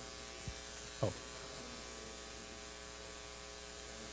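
Steady electrical mains hum with many even tones, the background of the hall's sound system, with one short spoken "oh" about a second in.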